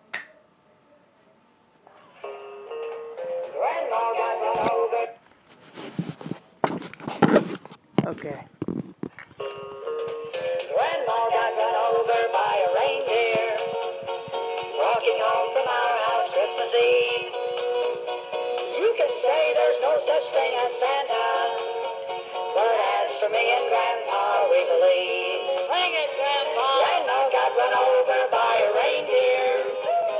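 Battery-operated singing plush toy playing through its small speaker: a short electronic jingle, a few seconds of knocks and rustling as the toy is handled, then a song with an electronic singing voice over a backing tune.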